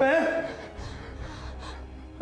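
A man wailing in grief, crying out "mẹ" (mum) loudly once at the start, then sobbing more quietly.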